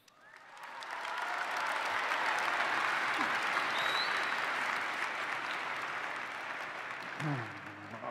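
Audience applauding: the clapping swells over the first second, holds, then slowly dies away as a man starts speaking near the end.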